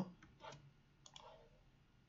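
Near silence with a few faint clicks, about half a second in and again around a second in.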